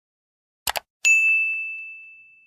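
Two quick mouse-click sound effects, then just after them a single bright bell ding that rings on and fades slowly. Together they make the click-and-notification-bell sound of an animated subscribe button.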